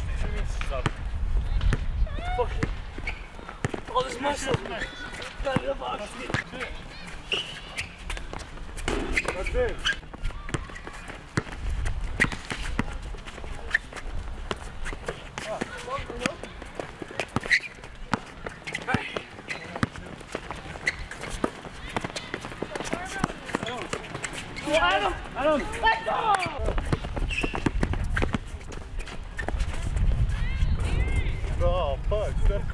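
Pickup basketball on an outdoor court: a ball bouncing on asphalt and scattered short knocks of play, under players' distant voices and shouts, with a burst of shouting near the end.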